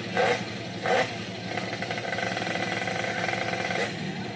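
Motorcycle engine and an Audi car engine running at a drag-race start line: a steady engine drone, with two short louder sounds in the first second.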